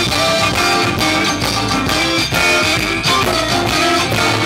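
Live blues band playing an instrumental passage, with electric guitar, keyboard and drum kit.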